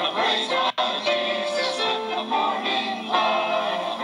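A small mixed choir of men and women singing a church anthem together, with one brief dropout in the sound a little under a second in.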